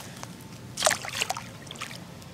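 A small largemouth bass splashing into shallow water as it is released: a short burst of splashing about a second in, then a smaller splash near the end.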